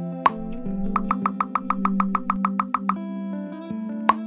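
Soft background music with sustained plucked-string tones, overlaid with cartoon sound effects: a single short pop about a quarter second in, then a quick even run of about sixteen bright plinks, roughly eight a second, from about one to three seconds in.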